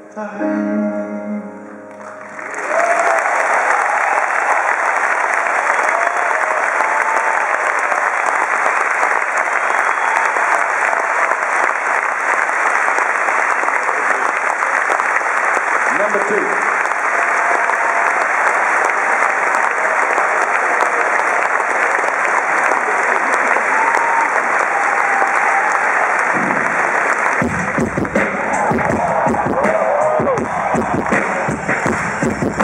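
A final piano chord rings out and fades. Then a large arena audience applauds and cheers for over twenty seconds. Near the end the band comes in with a low, heavy bass groove.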